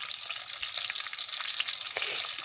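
Tomatoes, garlic and cumin seeds sizzling in hot oil in an aluminium pot, a steady crackling hiss.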